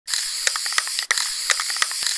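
Steady high hiss with irregular crackling clicks, like static or record crackle, briefly cutting out about a second in.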